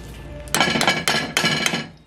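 Metal spoon clinking against a cooking pot while turning thick cornmeal: about six sharp, ringing knocks in quick succession, starting about half a second in.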